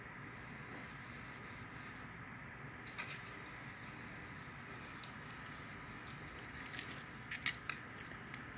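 Computer mouse clicking a few times over a steady hiss: one click about three seconds in and a quick cluster of clicks near the end.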